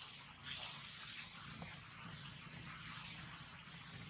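Faint wet licking and mouth sounds of a long-tailed macaque grooming a newborn macaque, over a steady outdoor background hiss.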